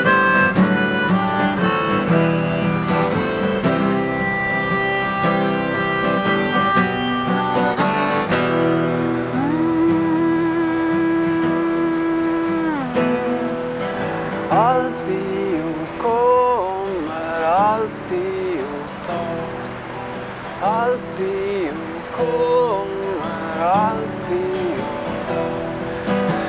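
Two acoustic guitars playing an instrumental passage of a folk-pop song, with a sustained lead melody over them whose notes slide and bend in pitch in the second half.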